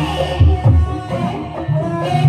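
Javanese Banyumasan gamelan playing ebeg dance music: ringing metallophone and kettle-gong lines over deep kendang drum strokes.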